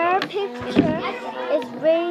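Children's voices talking, with high-pitched child speech that the recogniser did not turn into words.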